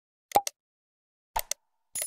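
Sound effects of an animated subscribe button: a short pop with a quick falling pitch about a third of a second in, followed by a click, then two quick clicks around one and a half seconds, with a bell-like chime starting at the very end.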